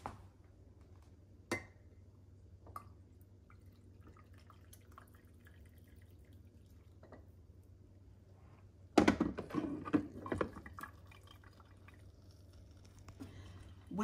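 Coffee poured from a glass carafe into a ceramic mug as a faint trickle. About nine seconds in, a few loud clunks and clatters follow, as the carafe is set back down on the coffee maker's warming plate.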